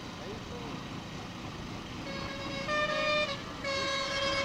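A vehicle horn honks twice, the first note a little over a second long about two seconds in, the second starting just before the end. Underneath is the steady rumble of wind and road noise from a moving motorcycle.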